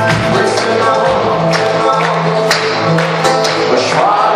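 A live band playing a pop-rock song over a concert PA, with acoustic guitar and steady drum beats, recorded from among the audience.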